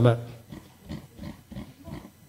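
A man's voice drawing out a hesitant "ma" that fades out within the first half second, followed by a pause with only faint room sounds.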